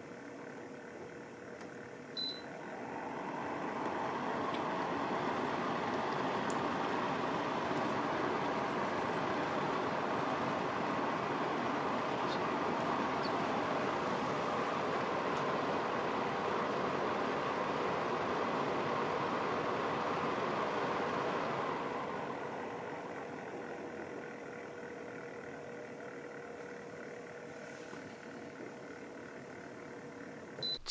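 AMEIFU FXAP2W HEPA air purifier: a short beep from its touch panel as auto mode is selected. Then its fan spins up to a steady rush of air at a higher speed. About twenty seconds later the fan winds down to a lower, quieter speed as auto mode responds to the falling PM2.5 reading.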